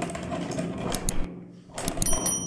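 Hand-cranked meat grinder being turned, grinding apricots through its plate: an uneven rough grinding and squelching sound with a few sharp clicks about a second in.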